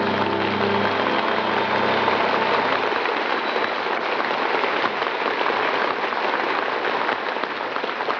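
Studio audience applauding at the end of a song on a 1940s radio broadcast recording, the orchestra's last chord dying away in the first second. The applause then holds steady and eases off slightly near the end.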